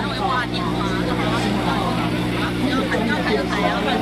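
Several people's voices talking at once, over a steady low hum.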